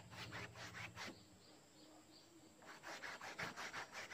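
A flat paintbrush scrubbing back and forth across the painting surface in a quick run of rasping strokes, about six a second. It pauses about a second in and starts again near the end.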